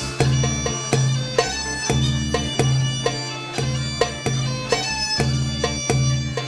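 Instrumental folk music: a reedy pipe melody over a steady low drone, with drum beats marking the rhythm.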